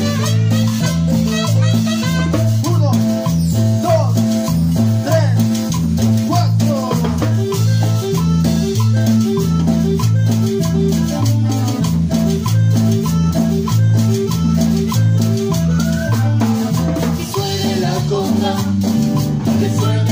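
Live band playing Latin dance music: a stepping electric bass line, a metal güira scraped in a steady rhythm, a drum kit, and a short-note melody with a marimba-like tone.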